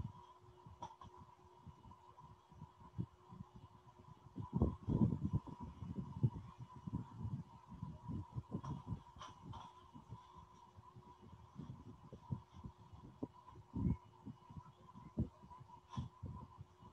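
Faint background noise: a steady thin whine under irregular low rumbles and thumps, loudest from about four to seven seconds in, with a few sharp clicks.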